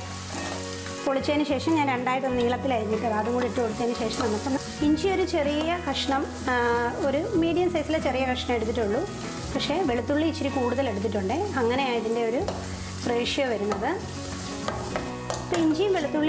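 Garlic cloves sizzling in hot oil in a steel pan, stirred with a steel spoon. Background music with a wavering melody plays over the sizzle.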